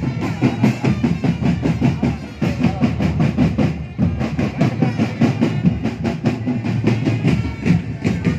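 Marching drum band playing, snare and bass drums beating a steady, fast rhythm.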